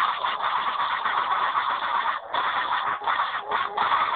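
A steady, dense rough noise, like a machine clatter, with a brief dip about two seconds in.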